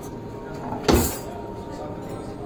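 Background murmur of voices, with one sudden knock about a second in, the loudest sound, dying away quickly.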